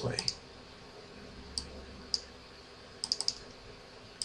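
Scattered clicks from a computer's mouse and keys. There are single clicks near the start and at about a second and a half and two seconds in, then a quick run of four or five at about three seconds in.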